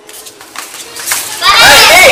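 A crowd of children's voices shouting and playing, building from the start and loud in the second half.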